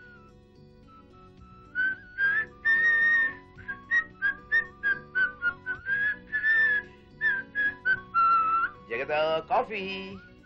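A man whistling a tune by mouth, quick short notes with a few held longer ones, over soft background music. Near the end a man's voice calls out.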